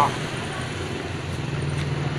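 Steady low hum of road traffic, with a few faint clicks near the end.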